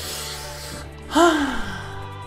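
A person's sigh: a breath drawn in, then a voiced exhale that falls in pitch, over steady background music.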